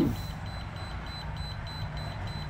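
Steady low hum of a running computer and its water-cooling pump, with a thin high-pitched tone held over it that pulses faintly about four times a second.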